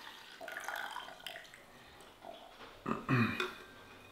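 Coffee poured from an insulated flask into a cup, a soft uneven trickle and gurgle over the first couple of seconds. About three seconds in comes a short throaty vocal sound.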